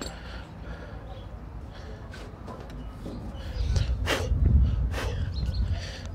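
Low wind rumble on the microphone, swelling in a gust about midway, with a few light clicks and knocks.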